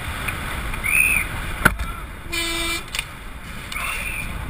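Rushing wind and rolling noise from a downhill bike speeding down a paved street, with a sharp knock a little before halfway. A horn sounds in one short steady blast just past halfway.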